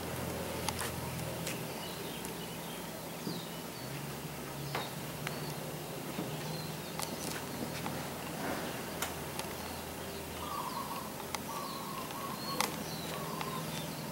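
Birds calling in the background: short high chirps scattered throughout and a run of repeated lower notes near the end, over a faint low hum that comes and goes.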